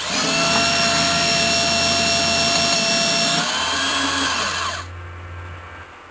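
A small electric motor whining steadily at one high pitch, like a power drill running, starting suddenly. About three and a half seconds in it drops slightly in pitch and fades, stopping just before five seconds.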